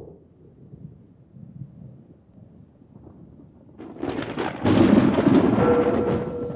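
A faint low rumble, then about four seconds in a loud, dense rushing noise that swells and holds to the end, with a single musical note coming in just before the end.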